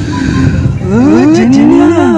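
Two drawn-out, moo-like calls: a short rising one about a second in, then a longer one that climbs and falls away near the end.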